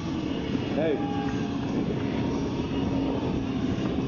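Sportbike engine running steadily while the rider rolls along on the front wheel in a stoppie, rear wheel in the air. A short shout of "hey" about a second in.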